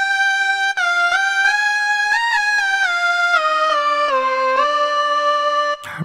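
Korg minilogue xd analogue synth lead playing a single-note melody, with the notes gliding into one another through portamento and run through chorus and ping-pong delay. The line climbs to its highest note about two seconds in, steps down to its lowest around four seconds, and holds a last note that cuts off near the end.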